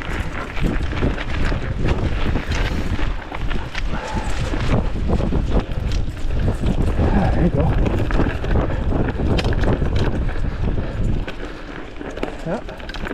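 Mountain bike riding along a leaf-strewn dirt trail: a steady low rumble of wind and ride vibration on the microphone, with frequent clicks and rattles of the bike over rough ground.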